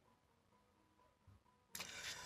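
Near silence: room tone, with a short faint noise near the end.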